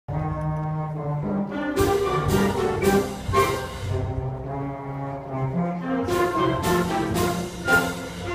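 Student concert band playing, wind instruments holding chords, with two runs of four sharp percussion strikes about half a second apart, one from about two seconds in and one near the end.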